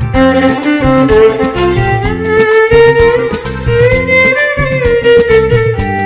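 A solo violin bows the melody of a Sinhala baila song, with slides up and down in pitch, over a backing track with a steady drum beat and bass.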